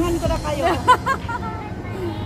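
Voices and chatter of people close by, with music fading out during the first moments.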